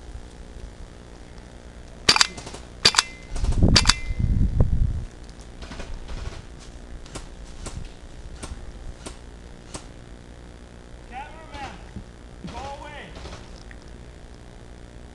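Airsoft guns firing: several sharp loud cracks about two seconds in, with a low rumble of handling noise on the microphone, followed by a string of fainter single shots about half a second apart. Faint distant shouts near the end.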